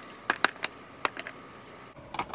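Lipstick tubes clicking and tapping against a clear acrylic lipstick organizer as they are set into its slots, a handful of sharp, irregular clicks.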